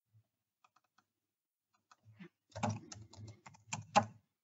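Typing on a computer keyboard: a few faint keystrokes at first, then a quicker run of keystrokes in the second half, the last one the loudest.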